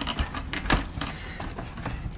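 A few light clicks and knocks as the roller brush of a Wertheim PB18 vacuum powerhead is lifted and handled in its plastic housing.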